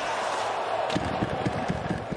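Ice hockey arena sound: a steady crowd hum, with a run of sharp clicks from sticks, skates and puck on the ice in the second half.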